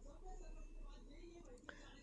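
Near silence between lines of narration: a faint background hiss, with one faint click near the end.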